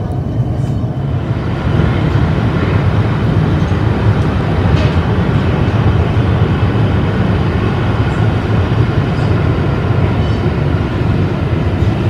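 Melbourne Metro suburban electric train heard from inside the carriage, pulling away from a station. Its running noise grows louder over the first couple of seconds as it picks up speed, then holds steady.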